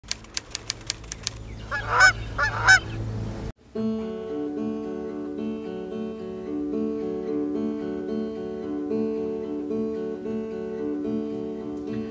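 A Canada goose honks three times in quick succession about two seconds in, over a low rumble, after a run of sharp clicks at the very start. After an abrupt cut, an acoustic guitar picks a steady intro of repeating arpeggiated notes.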